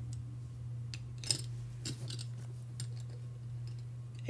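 Small brass jewelry pieces (a horse stamping, a wire loop and a filigree heart pendant) clicking and tapping against each other as fingers fit them together. There are a few scattered clicks, the sharpest about a second and a half in, over a steady low hum.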